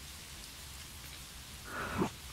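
Steady rain ambience, an even hiss of falling rain, with a soft breath swelling up near the end.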